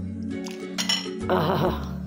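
A steel ladle clinking against a glass bowl as soup is ladled in, with a couple of sharp clinks just under a second in and a short splash of liquid around a second and a half in, over background music.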